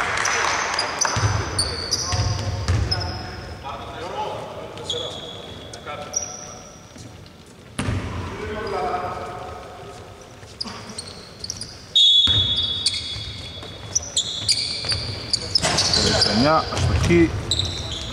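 Basketball game on a hardwood court in a large, mostly empty arena: the ball bounces, sneakers squeal in short bursts, and players call out. The loudest moment comes about twelve seconds in.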